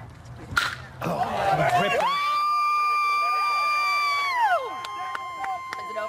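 A baseball bat cracks sharply against a pitch, then a spectator lets out a long, high whoop that holds for about two seconds before sliding down in pitch, with voices of the crowd around it.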